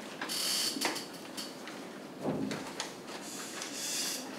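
Sheets of paper rustling and being shuffled at a desk. A longer rustle comes near the start and another near the end, with short flicks between them and a brief dull thump about two seconds in.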